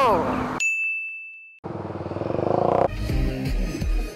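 A single electronic ding held as one steady high tone for about a second in otherwise silence. Then a motorcycle engine and road noise for a second or so, and background music with a heavy bass beat starting about three seconds in.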